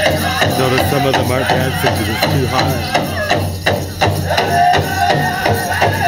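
A powwow drum group singing a grand entry song: a big drum struck in a steady beat under high-pitched men's voices singing together.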